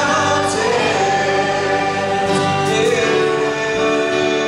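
Church worship band performing a contemporary Christian song: several voices singing together with long held notes, backed by guitars and drums.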